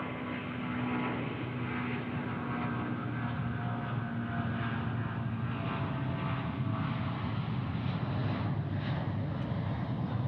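Airbus A380's four jet engines rumbling steadily as it rolls along the runway toward the listener, growing louder in the first second and then holding. A faint steady whine fades out about halfway through.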